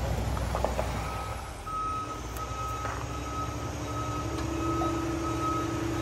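A heavy vehicle's reversing alarm beeps steadily in long, evenly spaced beeps, starting about a second in, over an engine running underneath.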